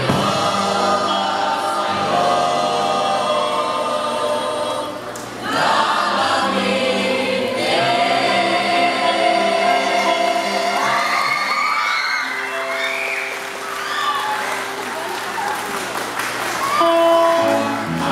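Mixed choir of women's and men's voices singing a slow choral piece in long, held chords, dipping briefly about five seconds in before the voices swell again.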